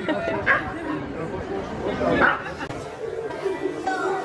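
Indistinct chatter of people's voices, with a few brief raised exclamations.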